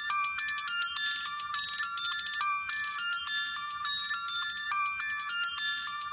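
Electronic music with the bass and drums dropped out: a high, bell-like synth melody of short repeated notes over quick clusters of high ticks.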